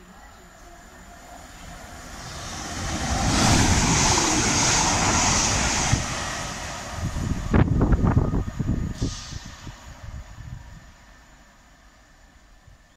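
Chiltern Railways Class 168 diesel multiple unit approaching and passing through at speed. A rising rush of engine and wheel noise builds to a loud peak, then a quick run of sharp wheel clatter comes over the track, and the sound fades away.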